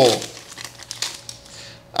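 Foil wrapper of a Pokémon TCG booster pack being torn open and crinkled by hand: a run of quiet, irregular crackles.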